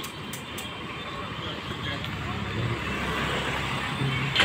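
Street traffic: small motorbike and auto-rickshaw engines running close by, the rumble growing slowly louder.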